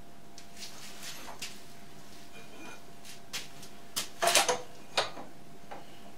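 A few sharp metallic clicks and knocks from hands setting up at a milling machine, loudest in a quick cluster about four seconds in. Under them runs a faint steady hum.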